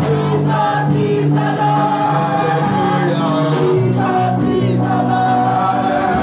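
Gospel music: voices singing together over a steady beat.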